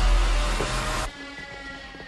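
Horror-trailer sound design: a loud, deep rumbling whoosh-hit that cuts off about a second in, leaving a quieter sustained tone.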